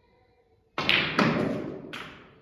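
Snooker balls: the cue tip strikes the cue ball, then about half a second later the cue ball clicks sharply against the black, and near the end a third knock comes as the black drops into the middle pocket, the sound dying away after it.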